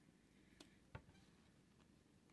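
Near silence, with a few faint handling clicks as a small rubber band is stretched and wrapped around a folded cotton T-shirt bundle. The loudest click comes about a second in.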